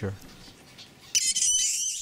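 A mink squeals in a wire cage: a single high-pitched squeal with a wavering pitch, starting about a second in and lasting under a second.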